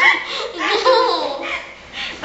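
Young women laughing with their mouths stuffed with marshmallows during a Chubby Bunny game.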